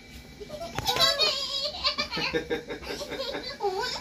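Young children's voices chattering and giggling, high-pitched, with a single short click just under a second in.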